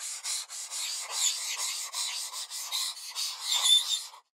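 A marker scribbling across paper in quick, scratchy strokes, a few a second: the sound of drawing.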